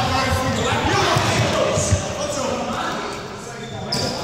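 Repeated thumps of a ball and running feet on a sports-hall floor, with players' voices calling out, all echoing in the large hall. A single sharp knock comes just before the two-second mark, and it grows quieter near the end.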